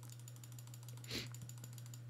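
Faint, fast, even clicking of a computer keyboard over a low steady hum, as the chart replay is stepped forward. A short breath comes about a second in.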